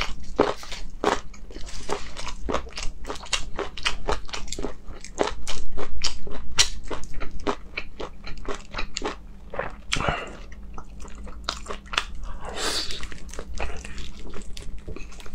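Close-miked eating: a person biting and chewing sauced meat, with a dense run of sharp, crisp crunches. The crunching is loudest about halfway through.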